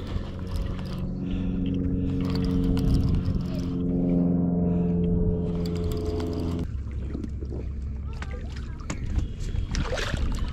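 Piscifun Chaos 50 baitcasting reel being cranked, its gears giving a steady whirring tone that rises slightly, as a hooked fish is reeled in under load. The winding stops abruptly about two-thirds of the way through, followed by a few scattered clicks and knocks.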